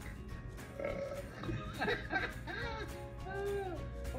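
A man's drawn-out burp, brought up by gulping sparkling water, over background music; in the second half it breaks into rising-and-falling, voice-like pitches.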